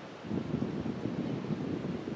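Wind buffeting the microphone: an irregular low rumble that starts a moment in.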